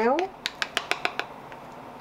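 Metal teaspoon clicking against a small plastic cup while stirring homemade watercolour paint: a quick run of about seven clicks, from about half a second to a second in.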